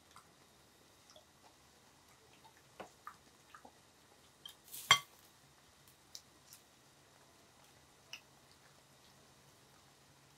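Scattered light clicks and taps of metal tongs and chopsticks against a pan of simmering bulgogi and serving dishes, with one sharp clink about five seconds in, the loudest.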